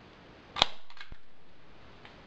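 Hand staple gun firing a staple through convertible-top canvas into the front bow: one sharp snap about half a second in, followed by a few lighter clicks.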